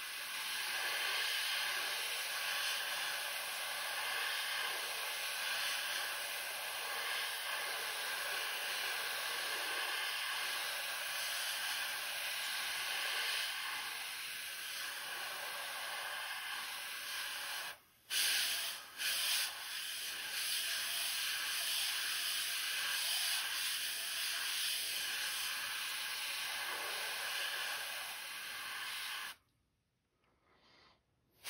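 Gravity-feed airbrush spraying black paint in a steady hiss of air. About eighteen seconds in it stops for a moment, gives two short bursts, then sprays steadily again until the air cuts off just before the end.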